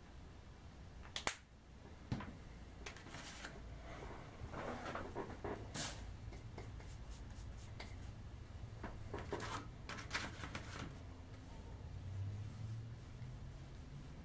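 Faint handling noise: two sharp clicks about a second and two seconds in, then scattered soft clicks and rubbing as a small paint bottle and plastic toy Jeep parts are handled, over a low steady room hum.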